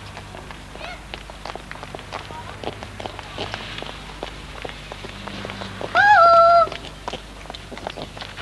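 Footsteps of people walking on a pavement, heard as a string of light irregular clicks. About six seconds in comes a loud, high, drawn-out call lasting under a second.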